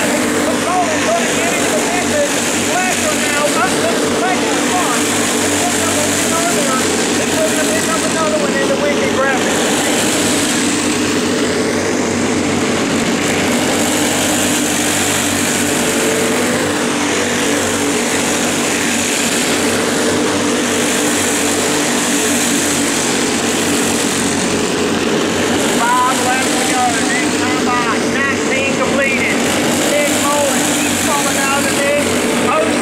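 Several small racing kart engines running at speed together, their pitch rising and falling steadily as the karts lap.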